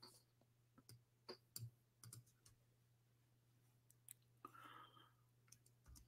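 Near silence with faint, scattered clicks of a computer keyboard and mouse as a search is typed, over a low steady hum.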